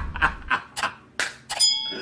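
Subscribe-button animation sound effects: a few short swishing clicks about a third of a second apart, then a bell-like ding near the end, the notification-bell chime.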